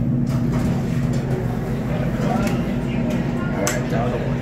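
Dover hydraulic elevator car arriving at a floor and its doors sliding open, over a steady low hum and the murmur of a busy shopping mall.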